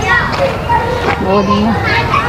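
People's voices, children's high-pitched calls and chatter among them, with a short held voice tone about halfway through.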